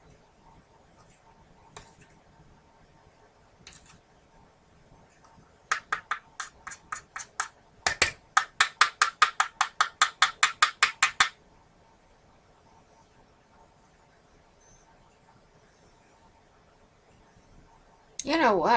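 A plastic spoon rubbed quickly back and forth over paper, burnishing a stamped coin. The strokes come in two quick runs of about five a second, in the middle of the stretch, with a few light taps before them.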